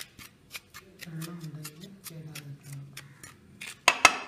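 Wooden spatula scraping and tapping against a metal pan while stirring ground spice powder, several short scrapes a second, with a louder clatter near the end.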